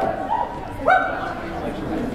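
Two short high-pitched shouts from spectators in a large hall, about a second apart, over a murmur of crowd chatter.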